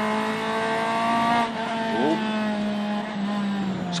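Honda Integra rally car's engine, heard from inside the cabin, running at high revs at a nearly steady pitch, with a brief dip about one and a half seconds in.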